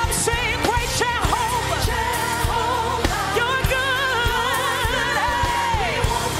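Woman lead vocalist singing a gospel worship song live, with strong vibrato, over band accompaniment with a steady beat. Near the end she holds one long note that slides down in pitch.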